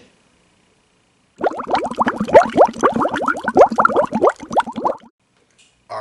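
A bubbling transition sound effect: a rapid run of short pitched pops, about ten a second, lasting about three and a half seconds.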